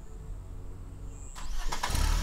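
A car engine starting up about one and a half seconds in, over a steady low rumble, and getting louder as it catches.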